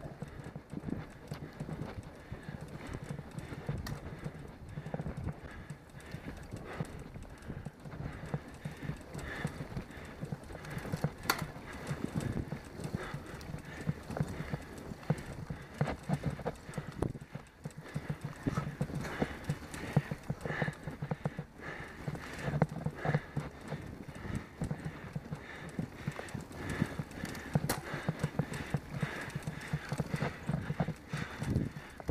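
A camera mounted on a moving road bike picks up a busy, irregular run of knocks and rattles from road vibration over rough asphalt, over a low rumble of wind on the microphone.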